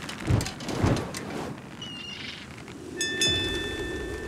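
Sound-design mix of an animated short's opening: a steady rain-like hiss with two low thuds in the first second and brief high chirps, then a clear bell-like chime about three seconds in that rings on.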